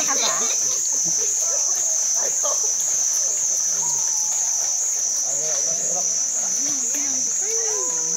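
A steady, high-pitched insect drone that pulses evenly a couple of times a second, with faint distant voices beneath it.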